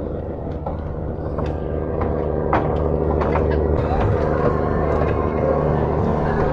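Steady low drone of the river cruise boat's engine running, growing a little louder about two seconds in, with a few light knocks on board.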